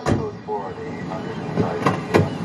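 Police radio chatter: short bursts of radio voices broken by sharp clicks. The music stops abruptly at the start.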